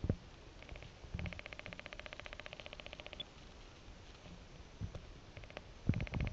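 Faint handling knocks from a hand-held Spiegel relaskop being turned and focused: one knock right at the start and two near the end. In between come faint trains of fast, even ticking, about a dozen ticks a second.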